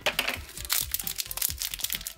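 Thin plastic wrapper around a small blind-bag toy crinkling in a dense run of fine crackles as it is worked open by hand, over quiet background music.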